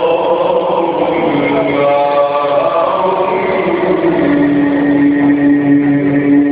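A man chanting Quranic recitation in the melodic tajweed style, his voice winding through ornamented phrases. About two-thirds of the way through he settles on one long held note.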